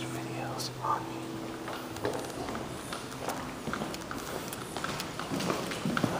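Steady electrical hum from an Otis Series 5 hydraulic elevator, several low tones together, which cuts off suddenly about two seconds in. Scattered light knocks and footsteps follow.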